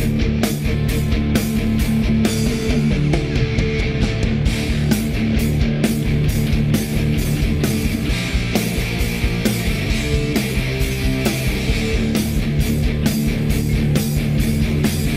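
Live hard rock band playing: distorted electric guitars, bass guitar and a steady drumbeat, an instrumental passage with no singing.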